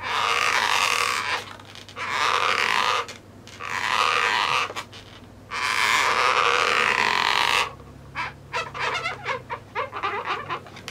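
Marker tip rubbing and squeaking across an inflated latex balloon in four long strokes, as when colouring in the eye. Near the end come quick short squeaks and dabs.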